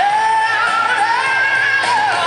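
Music with a singing voice, the voice holding long notes that bend and slide in pitch.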